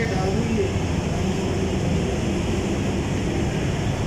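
A steady, loud, low rumble of background noise with no breaks, and faint voices at the start.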